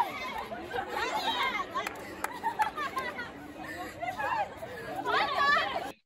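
A group of young women chattering and laughing together, their voices rising high and excited at times. A few light clicks sound around the middle.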